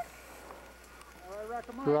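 Faint steady background hiss, then a man's voice starting about one and a half seconds in.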